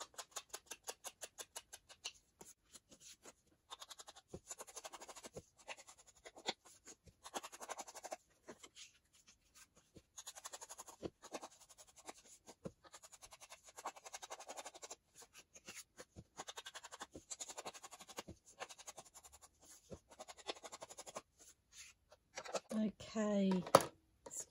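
Round ink blending tool dabbing and rubbing ink onto the edges of a small paper card: soft, scratchy strokes in quick runs with short pauses between them.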